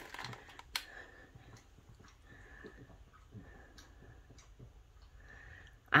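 Faint room tone with quiet handling sounds of a paper craft card in the hands, and a single sharp click about a second in.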